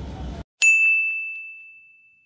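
A single bell-like ding, struck once about half a second in and ringing on one high tone that fades away slowly, set into complete silence as an edited-in sound effect.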